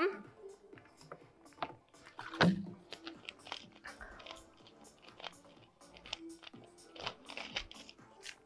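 Handling of a plastic water bottle after drinking: scattered small crackles of the plastic and clicks of the cap being screwed on. There is one louder short throaty sound about two and a half seconds in, over faint background music.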